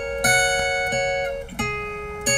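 Guitar strumming, two chords that each ring on: one about a quarter second in, a second about a second and a half in.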